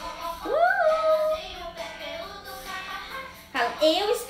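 A song with a sung voice: one note glides up and is held for about a second near the start, and the singing picks up again near the end.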